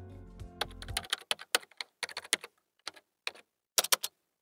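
Computer keyboard typing: a quick, irregular run of key clicks lasting about three seconds. The tail of the background music ends about a second in.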